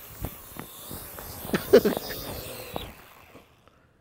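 AR Drone quadcopter's rotors running as it is hand-caught on landing, with several sharp knocks of handling and a brief grunt from the catcher partway through; the sound drops away about three seconds in.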